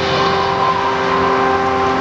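Television segment theme music: a held chord over a loud, steady noise, the chord shifting to new notes right at the start.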